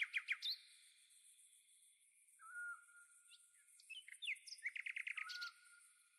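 Small birds chirping faintly: a few quick notes at the start, a thin whistle about halfway, and a rapid run of repeated notes near the end, over a faint high hiss.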